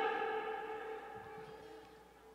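Echo tail of a man's shouted voice through a public-address system: the pitch of his last held word rings on and fades away steadily over about two seconds.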